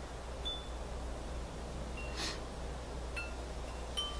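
Wind chimes sounding a few scattered, short high notes over a steady low hum.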